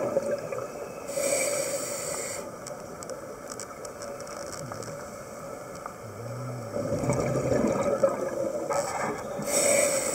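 Scuba breathing heard underwater through a regulator: two bursts of hissing exhaled bubbles, one about a second in and one near the end, with a muffled breathing rumble between them.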